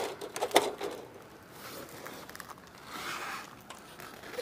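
Scraping and rustling of a person shifting against gritty asphalt roof shingles, with a few sharp clicks near the start, the loudest about half a second in.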